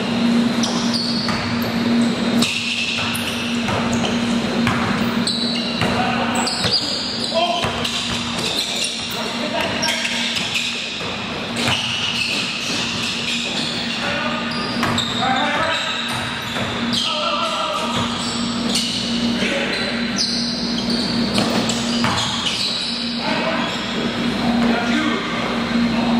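Indoor pickup basketball: a basketball bouncing on the court floor again and again, with players' voices echoing in a large gym hall and a steady low hum underneath.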